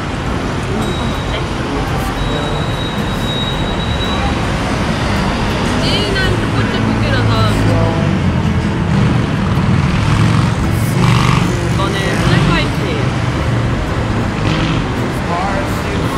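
Busy, steady background noise with indistinct voices of people talking, loudest in the middle stretch.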